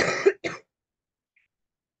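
A person coughs, a short two-part cough lasting about half a second right at the start.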